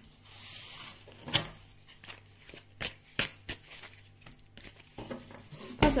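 Tarot cards being handled on a cloth-covered table: a soft sliding hiss at first, then scattered light taps and clicks as cards are moved and set down.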